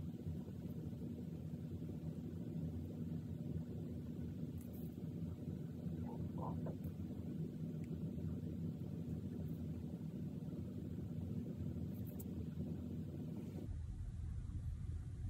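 A faint, steady low hum of background noise, with a few brief faint soft sounds partway through.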